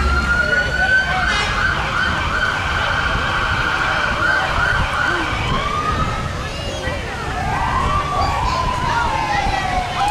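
A siren wailing: it rises to a high note held for several seconds, then drops away and sweeps up and down again at a lower pitch near the end.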